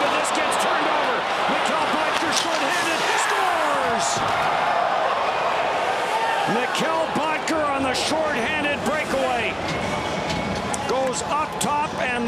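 Ice hockey arena sound: a steady crowd din of many voices, with scattered sharp knocks of sticks on the puck and of players hitting the boards.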